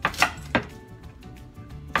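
Kitchen knife chopping through green stalks onto a wooden cutting board: three sharp chops in the first half second, then one more near the end.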